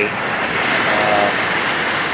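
Surf washing up on a sandy beach: a steady rush of water that swells and then eases off.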